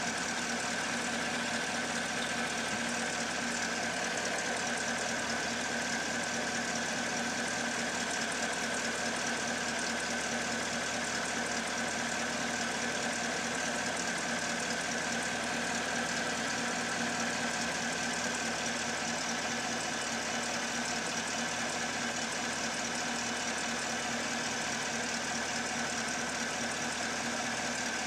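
2017 Chevrolet Camaro SS's 6.2-litre V8 idling steadily, heard from beneath the car while it runs for the transmission fluid level check.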